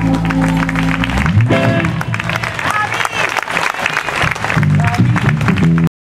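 A blues band's held closing chord rings out, ending about a second in. The audience then applauds, with voices calling out over the clapping, until the sound cuts off abruptly just before the end.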